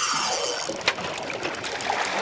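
Sea water sloshing and trickling against a small boat's hull, with a few small knocks.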